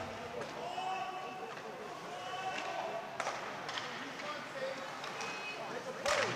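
Ice hockey rink sound during live play: a steady hiss with a few sharp clacks of sticks and puck, and faint distant voices in the arena.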